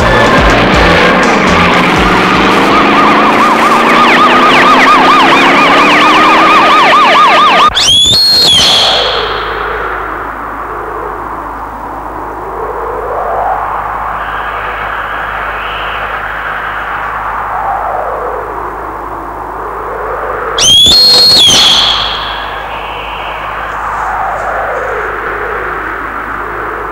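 Film soundtrack of a siren wailing, its pitch rising over the first few seconds and then sweeping slowly up and down, mixed with music. Twice, about eight seconds in and again near 21 seconds, a loud, brief sweeping sound cuts across it.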